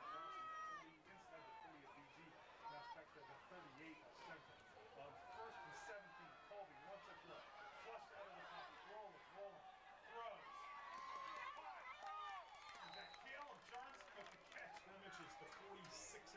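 Faint, overlapping chatter and calls of many voices from the spectators and sidelines at a football game, with no single voice standing out.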